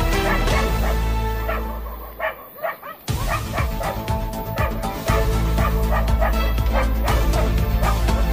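A dog barking and yelping repeatedly over background music that has a steady bass. The music drops away briefly about two seconds in, leaving the barks plainer.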